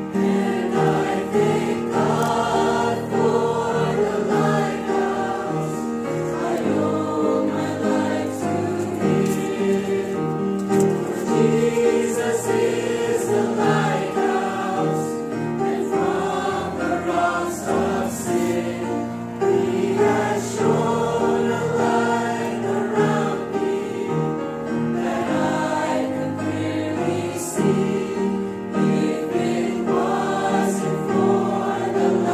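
Mixed church choir of men and women singing a hymn in parts, accompanied by an upright piano.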